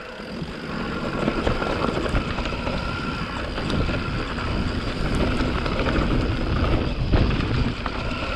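YT Capra mountain bike descending a dirt forest trail: a steady rumble of tyres rolling over packed dirt and roots, and the bike clattering over the bumps with many small knocks and clicks.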